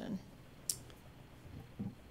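A single short, sharp click about two-thirds of a second in, during a quiet pause in a small room, with brief voice sounds at the start and near the end.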